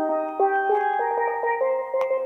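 A single steelpan played solo: a melody of ringing metallic notes that change every third to half second, with the longer notes rolled by rapid repeated strikes.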